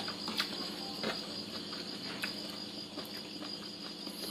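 Steady chirring of crickets in the night background, with a few faint clicks of a spoon on a plate.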